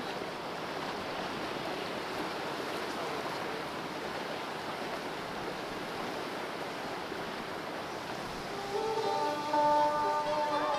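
Sea waves washing against rocks on a rocky shore, a steady rushing surf. About nine seconds in, plucked-string music comes in, louder than the surf.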